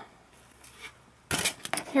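Quiet for over a second, then a short scraping clatter as a white foam plate is handled and set down.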